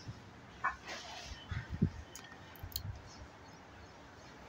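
Faint, scattered soft rustles and light taps from a kitten pawing and chewing at wired earphones on a fleece blanket, with one short knock a little before two seconds in.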